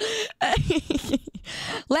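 A woman laughing breathily, in several short broken bursts.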